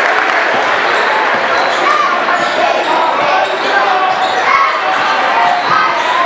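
A basketball dribbling on a hardwood gym floor during play, over the steady chatter of players and spectators in the gym.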